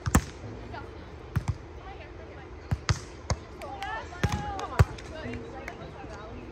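Beach volleyball being struck by hand: a sharp smack of the serve right at the start, then several more hits of the ball through the rally, the loudest about five seconds in. Voices call out during the rally.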